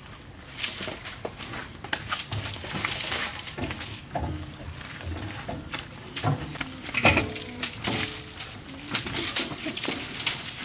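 Scattered knocks and rustles of firewood and sticks being handled and pushed into a metal stove, over a steady high-pitched buzz, with a few brief children's voices.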